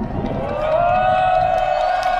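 One long drawn-out vocal call rides above crowd noise. It rises in pitch at first, then is held on a single note for about two seconds.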